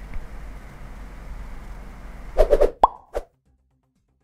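Steady low background hiss and hum, then about two and a half seconds in a quick run of four or five sharp plop sound effects with a short bright blip among them, after which the sound cuts off to silence.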